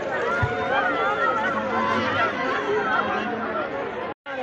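A crowd of many voices talking and calling over one another.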